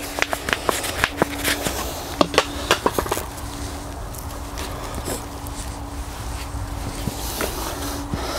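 Hands handling a seedling in a plastic pot and working soil with a trowel: a run of small clicks and rustles over the first three seconds, then quieter, steadier scuffing.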